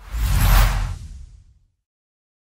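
A whoosh sound effect with a deep rumble underneath, swelling quickly and fading out over about a second and a half.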